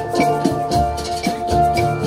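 Steel drum (steelpan) ensemble playing a slow tune. Held, rolled melody notes ring over bass pan notes, with light percussion keeping a steady beat.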